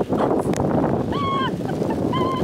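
Wind rushing on the microphone at the seashore, with a short call from a bird about a second in, its pitch rising and falling.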